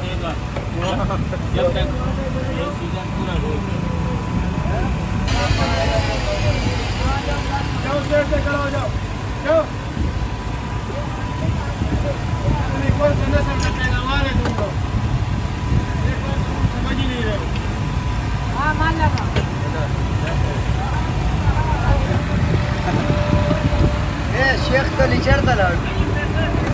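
Busy street ambience: a steady low traffic rumble with voices talking now and then in the background.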